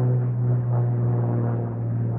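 Propeller drone of an Extra EA-330LT aerobatic plane flying over: a steady, strongly pitched buzzing hum from its three-blade propeller and six-cylinder Lycoming engine.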